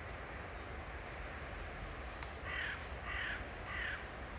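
A bird gives three short harsh calls in quick succession, about half a second apart, starting a little past the middle. A single sharp click comes just before the first call, over a steady low outdoor rumble.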